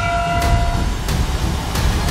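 A large gong rings with several steady tones that die away within the first second, over a cinematic score's heavy low rumble and sharp percussion hits about every two-thirds of a second.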